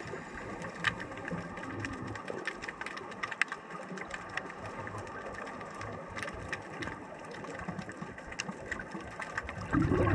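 Underwater ambience: a steady faint hiss scattered with sharp little clicks, then a sudden loud rush of bubbling water near the end.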